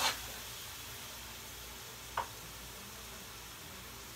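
Pork in soy sauce sizzling steadily in a wok, an even hiss. There is a single knock of the spatula at the start and one faint click about two seconds in.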